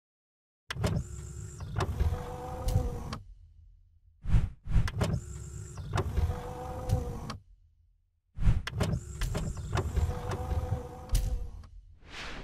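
Sound effect for an animated intro: a motorised mechanical whir, like panels sliding into place, starting with clunks and fading out. It plays three times, about four seconds apart, as the boxes turn.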